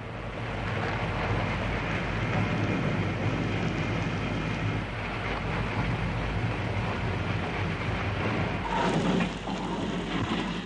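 Steelworks noise: a dense, steady roar and rumble with a low hum underneath, as molten steel is handled and poured into ingot moulds.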